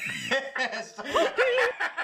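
Men laughing and snickering, mixed with bits of voice.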